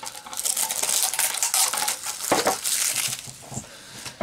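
A small metal tin being handled, with rustling, clinking and rattling, busiest in the first two seconds, a brief sharp clatter a little past the middle, then quieter.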